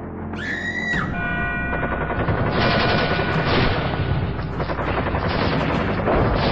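Soundtrack of disaster sound effects over music: a short pitched screech rises and falls in the first second, then a dense, rapid rattle of cracks and bangs runs on over held musical tones.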